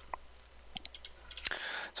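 Computer mouse buttons clicking: one light click, then a quick run of several clicks about a second in.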